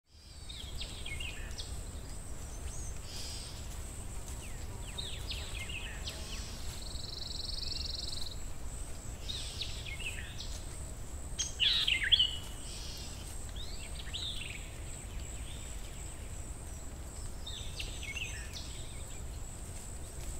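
Woodland ambience: songbirds calling in short chirping phrases every few seconds, the loudest about twelve seconds in, over a steady high-pitched insect drone and a low background rumble.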